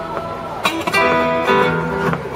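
Guitar strumming chords through the PA during a band's sound check. A held chord fades out, then new strummed chords come in sharply about two thirds of a second in and change every half second or so.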